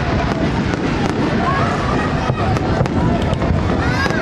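Fireworks display going off: a continuous low rumble of booms broken by many sharp bangs and crackles.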